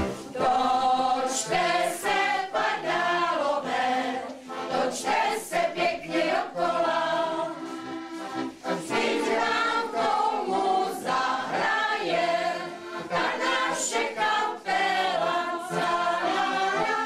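A group of older women singing an old Prague song together.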